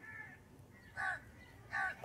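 Two short, faint bird calls, one about a second in and another near the end, each with a brief downward slide in pitch, heard over quiet outdoor background.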